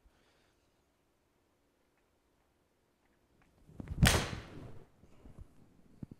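A Mizuno MP-20 HMB 4-iron struck against a golf ball: a short swish of the downswing rising into one sharp, loud crack of contact about four seconds in, with a brief trailing rattle as the ball meets the simulator screen.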